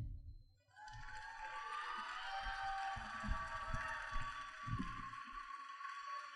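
Audience applauding, starting about a second in.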